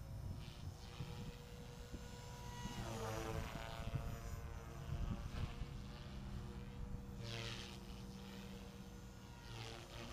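Align T-REX 450L Dominator electric RC helicopter in flight, its rotor blades and KDE450FX brushless motor whirring with the head speed governed at about 3,500 rpm. The pitch sweeps with each close pass, most clearly about three seconds in and again around seven and a half seconds.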